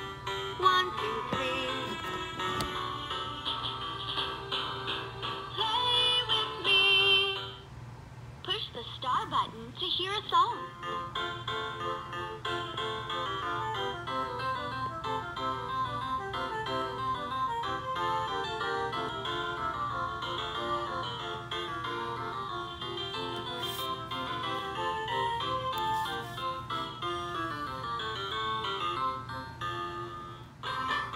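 A LeapFrog Learn & Groove Color Play Drum toy plays an electronic children's melody through its built-in speaker. About a quarter of the way in, the melody breaks briefly for a few sliding tones.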